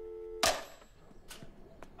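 Telephone dial tone, a steady low two-note hum, held until about half a second in, when a sharp clatter cuts it off. A couple of light knocks follow.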